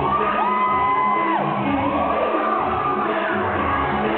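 Recorded dance music played over speakers in a gymnasium, with the crowd whooping and cheering over it: two long high whoops in the first three seconds.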